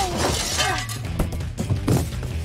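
A crash at the start, a noisy burst that fades within about half a second, over background music with a steady low line.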